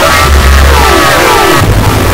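Loud, heavily processed audio-effect soundtrack: a thick bass drone under several stacked tones that slide down in pitch over the first second and a half, then a denser, noisier texture.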